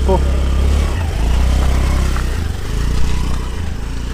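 Motorcycle engine idling steadily over a constant rushing noise.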